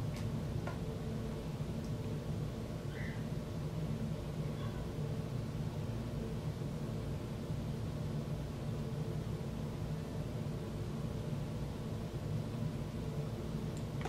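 Steady low hum with a faint hiss: room tone, with one faint click under a second in.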